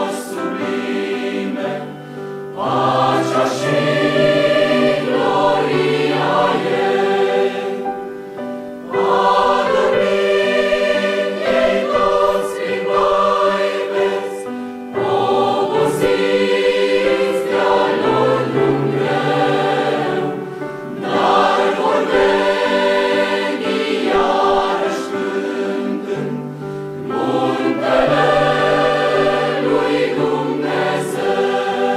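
Large mixed choir of women's and men's voices singing, phrase after phrase, with short dips between phrases about every six seconds.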